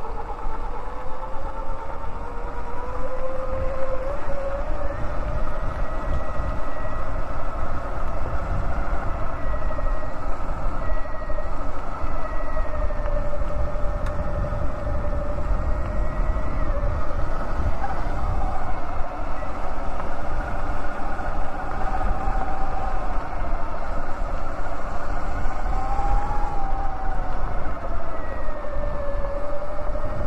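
Electric bike motor whine that rises in pitch over the first few seconds and then wavers up and down with riding speed, over a heavy low rumble of wind on the microphone.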